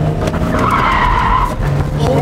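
Car tyres squealing for about a second as a Nissan car is swung hard through a turn, heard from inside the cabin over the engine's running.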